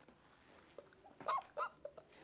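A man's high, squeaky whimpering vocal sounds: a couple of short squeals with bending pitch a little after a second in, drawn out of his laughter.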